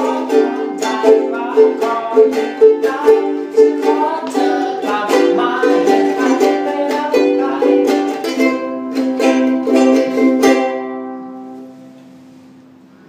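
Ukulele strummed in a steady rhythm of chords, ending on a last chord that rings out and fades away near the end.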